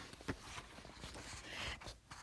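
Quiet room noise with a faint click shortly after the start and a soft hiss near the end.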